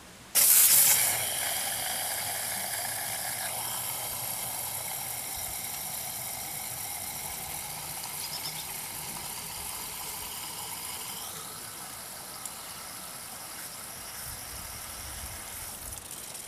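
Garden hose spray nozzle switched on about half a second in, water hissing as it is forced into the water pump outlet of a Reliant 850cc engine block to flush and fill its coolant passages. Loudest at the start, then a steady hiss that slowly grows quieter.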